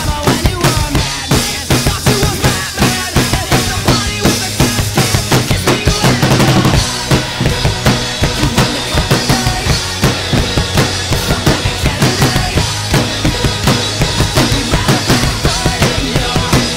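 Acoustic rock drum kit played at a fast, driving beat: kick drum, a close-miked snare and crash cymbals, over a rock band recording.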